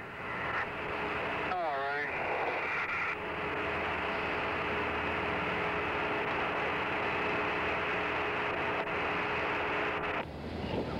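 Steady radio static hiss with a faint steady hum on the Apollo air-to-ground voice link, an open channel with nobody talking clearly. A short burst of garbled, warbling voice comes through about a second and a half in.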